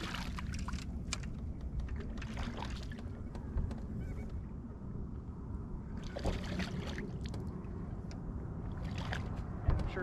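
Water splashing in several short bursts as a hooked smallmouth bass thrashes at the side of a boat while being landed, over a steady low rumble.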